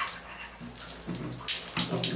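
Water running and splashing in a tiled shower stall, an uneven spatter with no steady tone.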